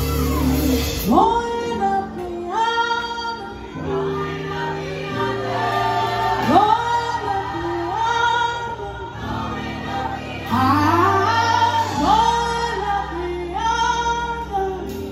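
A woman singing live with a band, in long phrases that each slide up into a held, wavering note, over sustained electric bass and keyboard chords.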